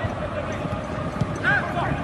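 Pitch-side sound of a soccer match: a ball knocked between players a couple of times and a brief shout from the field over a steady background of stadium noise.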